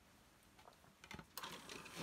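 Near silence: room tone, with a few faint clicks a little after a second in.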